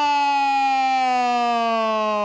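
A man's long held goal shout: one sustained, loud note that sinks slowly in pitch.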